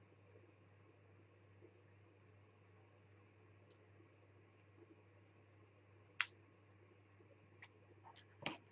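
Near silence: low steady room hum, broken by one sharp click about six seconds in and a fainter tick near the end.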